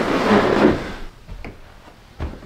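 A wooden bedroom door being handled: a short scraping rustle that fades within about a second, then a faint click like its latch.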